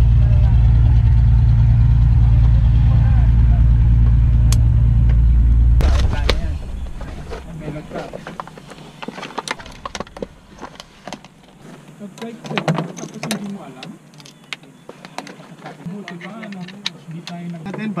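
A loud, steady low drone that cuts off suddenly about six seconds in. It is followed by rustling, clicks and scraping as a zippered aviation headset case is opened and the headset and its cable are handled.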